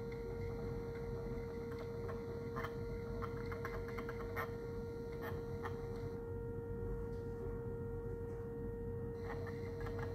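3D-printed mini Whelen Hornet siren sounding its alert signal, one steady unbroken tone from its rotating horn head. A low rumble runs underneath, with scattered light clicks about two to four seconds in and again near the end.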